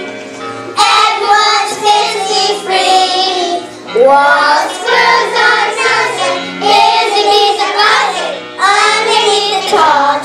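Children's chorus singing a song in unison over instrumental accompaniment with a low bass line.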